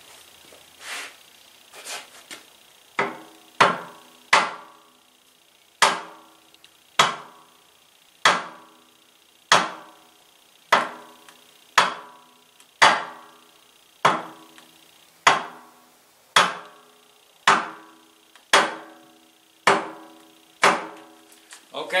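Steady hammer blows, about one a second and lighter for the first few, knocking the cast-iron flywheel and crankshaft of a 1920 International Type M engine endwise. The metal rings after each strike as the crankshaft is driven to the end of its travel to show its end play.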